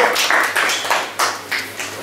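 Applause from a small audience: a patter of hand claps that thins out and stops about a second and a half in.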